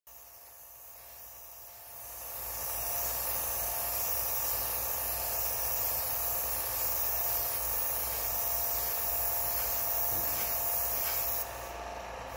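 Gravity-feed airbrush spraying paint: a steady hiss of air and paint that grows louder about two seconds in and cuts off near the end.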